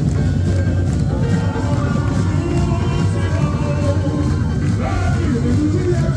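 Samba parade music: a steady percussion beat with a voice singing over it.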